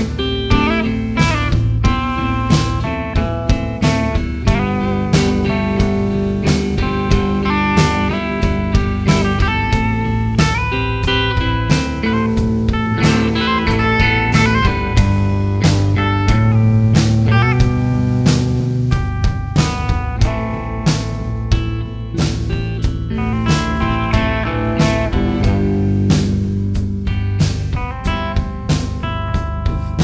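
Instrumental break in a rock song: electric guitars playing over a steady drum-kit beat, with no singing.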